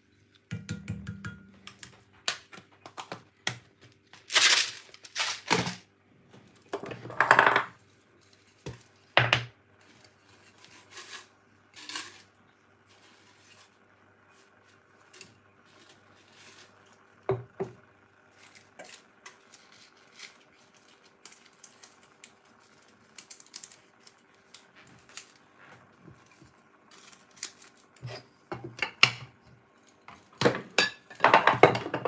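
A plastic spoon stirring a stainless steel saucepan of water and herbs, knocking and scraping against the pan in irregular clicks and clinks, louder in the first dozen seconds and lighter after that. A faint steady hum runs underneath.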